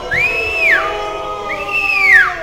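Two loud whistles, each under a second, gliding up, holding and sliding back down, over steady held tones in the background.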